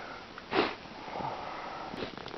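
A single sharp sniff about half a second in, followed by softer steady noise.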